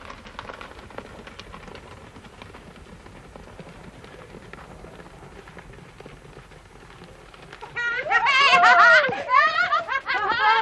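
A faint scuffling background with scattered light clicks. About eight seconds in, a loud, high voice breaks in with a strongly wavering pitch.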